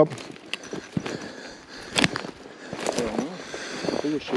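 Footsteps crunching through snow and brush, in irregular crunches with one sharper crack about halfway through. A faint voice is heard briefly near the end.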